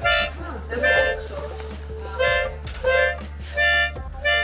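Toy saxophone blown in about five short, steady toots, each a single held note.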